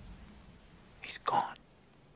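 A man's short breathy puff of air over his fingertips, with a soft whispered word, about a second in; otherwise quiet room tone.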